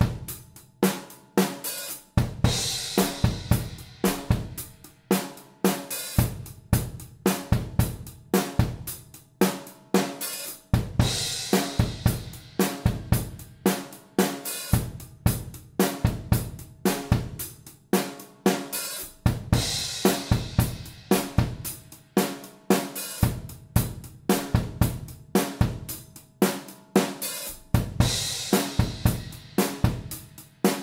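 Drum kit playing a steady four-bar groove at a medium-fast tempo: hi-hat eighth notes with bass drum and snare. A bright cymbal wash comes round about every eight and a half seconds, as each four-bar pattern repeats.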